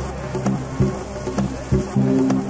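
Progressive house DJ mix: a steady four-on-the-floor kick drum a little over two beats a second under sustained synth bass notes.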